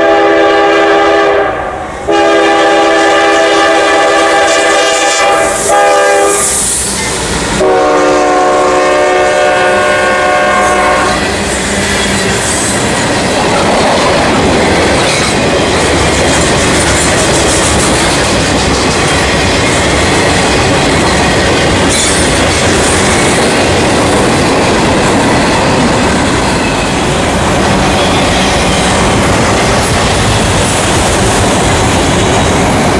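CSX freight locomotive's air horn sounding the grade-crossing pattern: two long blasts, a short one and a final long one, the last slightly lower in pitch as the locomotive goes by. Then the train's cars roll past close by with steady clickety-clack of wheels over the rail joints.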